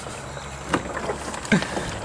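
Used engine oil draining from a vehicle's oil pan in a steady stream into a drain pan, with a single sharp click a little before the middle.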